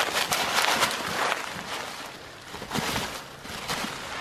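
Dry fallen leaves rustling and crackling as a hunting dog grabs and worries a freshly shot raccoon on the ground, busiest in the first second and then dying down, with a couple of dull knocks near the end.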